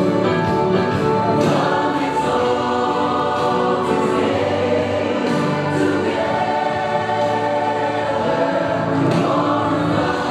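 Choir singing gospel music, with long held notes and no break.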